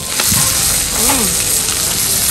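Pork slices sizzling and popping in fat on a hot brass moo kratha grill pan, with the clicks of chopsticks stirring the meat; the hiss turns louder right at the start.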